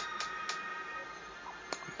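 Quiet pause with a faint steady high hum that fades early, and three soft clicks.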